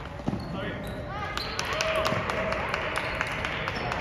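Table tennis play: the celluloid-type ball clicks repeatedly off paddles and tables in quick, irregular succession. Short squeaks come from shoes on the hardwood gym floor, over a background of people talking in the hall.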